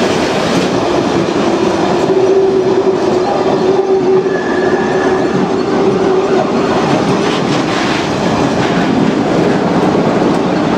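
Rake of engineers' wagons rolling past close by, wheels clattering over the rail joints in a loud, continuous rumble. A steady whine runs underneath, with a brief higher squeal about four and a half seconds in.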